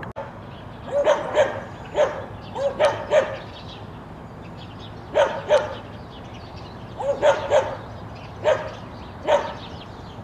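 A dog barking repeatedly in short bursts, mostly in groups of two or three barks with pauses of a second or two between the groups.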